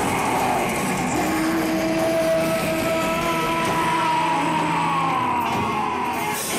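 Live psychedelic rock band playing. A long droning tone enters about a second in and sags slowly in pitch near the end.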